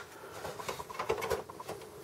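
A few faint light clicks and scrapes as the front USB board of a Dell GX270 and its ribbon cables are handled and set against the sheet-metal drive cage.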